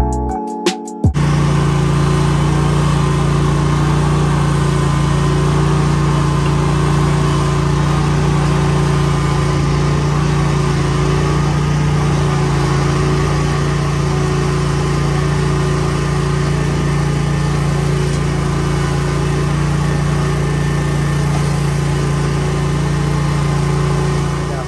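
Zero-turn mower's engine running steadily at one even speed, a constant low hum with no revving or changes.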